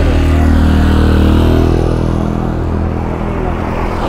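A motor vehicle engine idling close by, a steady low hum that eases off a little in the second half.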